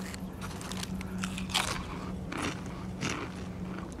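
Someone crunching and chewing a mouthful of PopCorners popped-corn chips, in a run of irregular crisp crunches. A low steady hum sits underneath.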